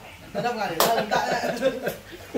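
Men talking, with a single sharp hand slap a little under a second in.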